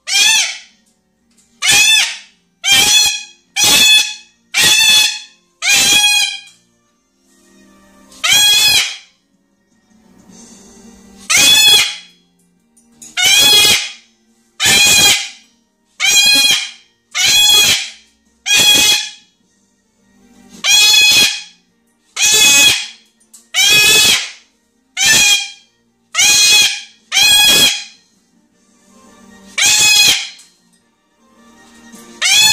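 Salmon-crested (Moluccan) cockatoo screaming over and over, loud and harsh: about twenty screams of about half a second each, mostly about one a second, with a few pauses of a second or two between runs. They are the calls of a grumpy, displeased bird that nothing will settle.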